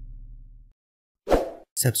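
Tail of a deep, low intro sound effect fading out, then a brief silence before a narrator's voice begins past the halfway point.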